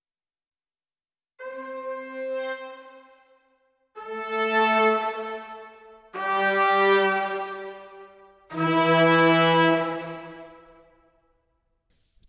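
Spitfire Audio Originals Epic Brass sampled brass ensemble, voiced in octaves, playing four long held notes that step down in pitch. Each note fades out slowly through the room mic and built-in reverb.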